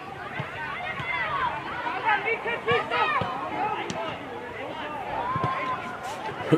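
Young football players shouting and calling to each other, several high children's voices overlapping. A few short thuds of the ball being kicked come through between the calls.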